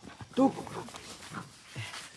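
Several dogs crowding close together, one giving a short pitched yelp about half a second in, with fainter scuffling and small noises after.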